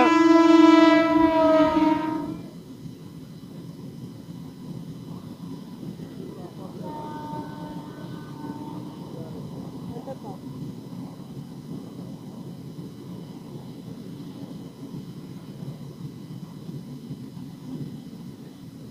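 A train horn sounds for about two seconds at the start, one steady multi-tone blast. It is followed by the steady rumble of Indian Railways passenger coaches rolling past on the track.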